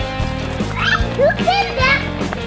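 Background music with a steady beat, with a young child's high squeals and laughter over it from about a second in.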